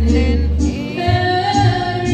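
A woman singing a Spanish-language Tejano ballad into a microphone over backing music with a deep bass line. About a second in she holds a long note.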